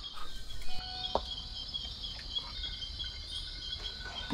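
Insects chirping steadily, a regular pulsing chorus like crickets, with a couple of short faint knocks in the first half.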